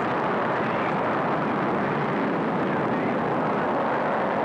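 Atlas rocket engines at liftoff: a steady, even rush of noise with no distinct tone.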